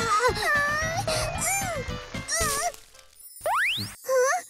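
Cartoon soundtrack: background music under a character's short wavering yelps of effort. Near the end the music drops away and a quick rising whistle-like sweep plays as a scene-change sound effect.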